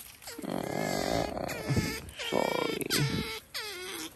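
Otters whining and squealing in a string of high, wavering calls, each about a second long and falling in pitch at the end: begging calls.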